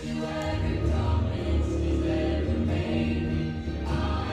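A choir singing a gospel song over accompaniment with a strong bass, in held notes.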